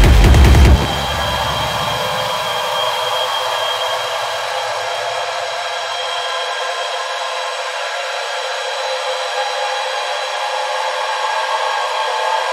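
Electronic techno track in a breakdown: the kick drum and bass cut out about a second in, leaving a steady, noisy drone with all of the low end filtered away.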